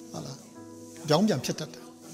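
A man's voice says a short phrase about a second in, over soft background music of steady held tones.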